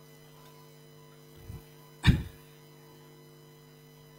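Steady electrical mains hum from a microphone and sound system. A single loud, brief sound comes about two seconds in, with a fainter low one just before it.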